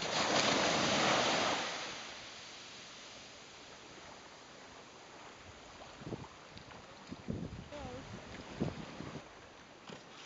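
Small waves breaking on a sandy beach. A two-second wash of surf comes at the start, then the gentle, steady sound of calm water lapping.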